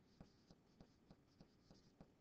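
Faint handwriting with a stylus on a pen tablet: light ticks and scratches of the pen tip, about three a second, over a low hiss.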